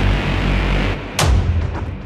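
Latin afro tribal tech house from a DJ set, with a deep, sustained bass line, then a single loud booming hit a little past one second that dies away.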